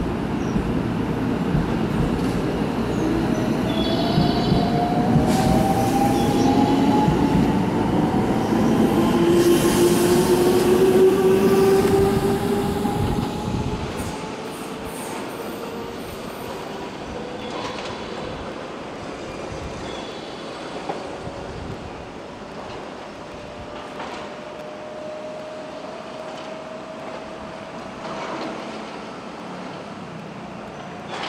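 Electric train pulling out and accelerating: the rumble of its wheels, with a motor whine that rises steadily in pitch. It is loudest in the first half, then drops away sharply about halfway through, leaving a fainter rising whine.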